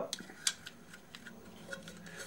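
A few light metallic clicks and taps, the sharpest about half a second in, as small parts are handled on the magneto points plate of a British Anzani outboard motor during reassembly.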